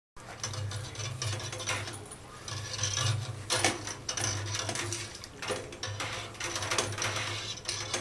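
A long-handled utensil stirring Parmesan curds in whey in a metal pot during the cook, with irregular clicks and scrapes against the pot every second or so. A steady low hum runs underneath.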